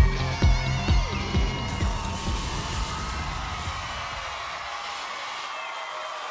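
The last bars of an electropop song with a heavy kick drum; the beat stops about a second and a half in. A studio audience cheers and whoops through it, the cheering fading toward the end.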